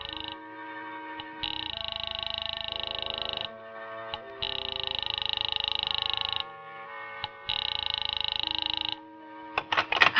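Telephone ringing at the other end of the line, a sound effect: the last of one ring, then three more rings of about two seconds each with short pauses between, over held background music.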